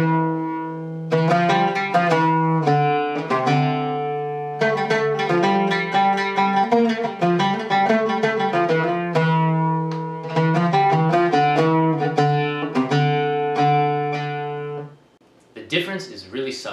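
Oud plucked with a pick, playing the Turkish makam Bayati (Uşşak) scale in several short phrases of single notes. Its quarter-tone second degree is pitched on the sharp side, as Turkish quarter tones tend to be. The playing stops about a second before the end.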